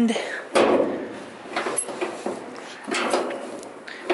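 Wind buffeting the microphone, with a few irregular knocks and rattles as the steel hood of an early-1960s Chevrolet pickup is pulled at its stuck latch.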